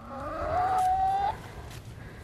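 A chicken in the flock gives one long call that rises in pitch, holds steady for about a second and cuts off.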